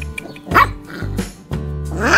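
A small puppy giving a short, high bark about half a second in and a softer one a little later, over background music with steady low notes.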